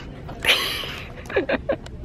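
A girl's loud breathy shriek about half a second in, then three quick squeals of laughter, each falling sharply in pitch.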